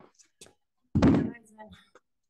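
A single heavy thunk about a second in, as dumbbells are set down on the floor at the end of a set of thrusters.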